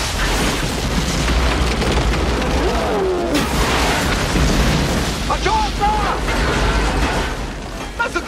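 Film sound effects of a long, loud rumbling blast as rock and debris erupt from the ground in a gas blowout, with brief shouts partway through.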